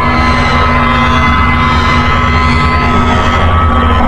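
Electronic dance music intro played on a Korg Kaossilator synthesizer: a held synth drone with several steady tones over deep bass, and a faint sweep in the high end, with no beat yet.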